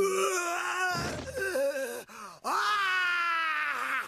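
An anime character's voice crying out in two long, drawn-out groaning wails, the second held for over a second with a slowly falling pitch.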